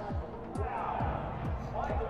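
Background music with a steady, thudding low beat.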